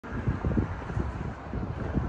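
Wind buffeting the microphone outdoors: an uneven low rumble that swells and drops in gusts.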